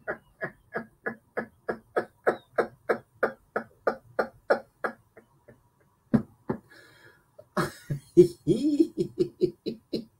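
A man laughing hard in a long run of short rhythmic pulses, about three a second. The laugh breaks off about halfway, then starts up again near the end.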